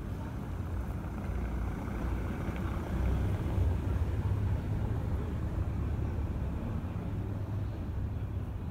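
Outdoor street ambience: a low, steady rumble that swells a little about three seconds in.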